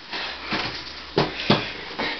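Footsteps of a person climbing wooden stairs while carrying a dog: two sharp knocks a little over a second in, about a third of a second apart, over a soft rustle of handling.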